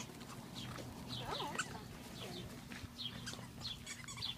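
Faint animal calls: quick high chirps that fall in pitch, a few each second, with a short lower wavering whine about a second in.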